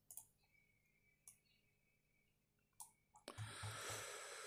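Near silence with a few faint, separate clicks of a computer mouse, then a faint soft rush of noise in the last second.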